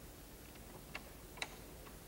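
Quiet room tone with a few faint, short clicks, the two clearest about a second in and half a second later.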